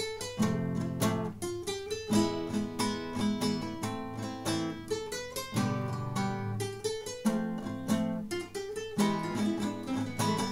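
Flamenco-style acoustic guitar music, with quick strummed chords and plucked notes in a steady rhythm.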